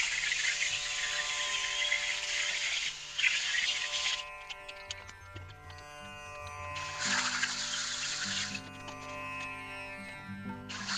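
Angle grinder cutting into thick steel plate: a steady hissing grind for about four seconds that stops, then a second, shorter cut about three seconds later. Background music with sustained string tones plays throughout.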